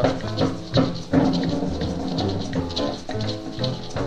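Swing band record playing an instrumental passage of a rhumba-style blues between sung lines: held ensemble notes over a steady bass line.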